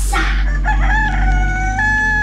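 A rooster crowing, played as a sound effect on a radio broadcast: one long held call starting about half a second in, falling slightly in pitch, over low steady tones.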